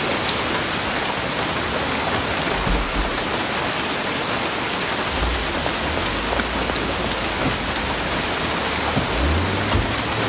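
Heavy rain pouring steadily, with a few short low rumbles under it.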